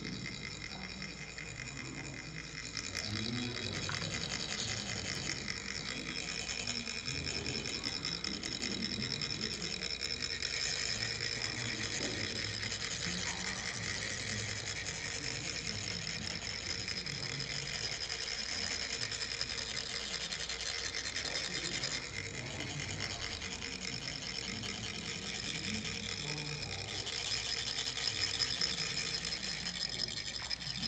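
Several chak-pur, the ridged metal sand funnels of Tibetan sand-mandala making, being rubbed with metal rods. The result is a fine, rapid, steady rasping, the vibration that makes the coloured sand trickle out onto the mandala.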